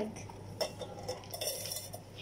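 A few light clinks and knocks of a stainless steel pot and its metal handle being handled.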